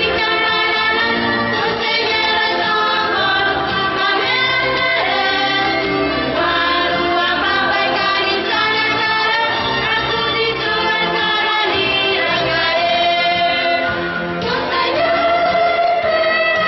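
A choir of girls' and young women's voices singing a religious song together in several parts, sung into hand-held microphones, with long held notes and no break.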